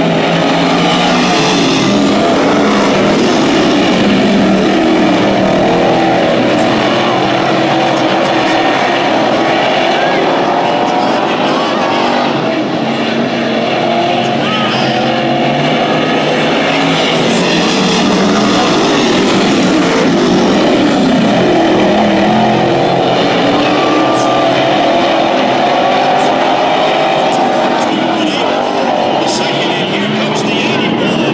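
A pack of dirt-track sportsman race cars racing around a dirt oval, several engines at full throttle together. The engine note drones steadily, its pitch shifting as the cars pass and lap.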